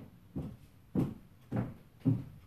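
Footsteps of 7-inch high heels on a squeaky hardwood floor, three steps about 0.6 s apart, each heel strike knocking on the boards with a short ring after it.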